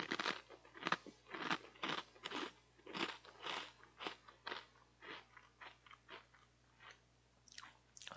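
A person chewing crunchy food close to the microphone: a run of short, irregular crunches, two or three a second, thinning out near the end.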